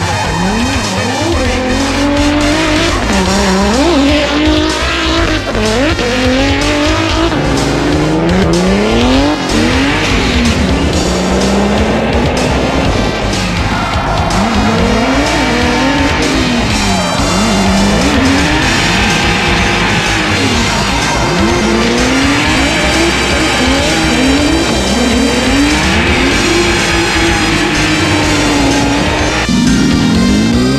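Drift cars' engines revving up and down again and again, with tyres squealing and sliding, over background music with a steady bass.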